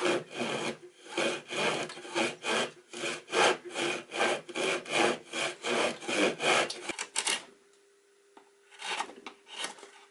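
A backsaw cutting into the end of a wooden board, steady back-and-forth strokes about three a second, stopping about seven seconds in. A few fainter scraping strokes follow near the end.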